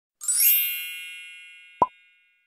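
Intro sound effects: a bright, shimmering chime that rings out and slowly fades, then a single short mouse-click sound near the end.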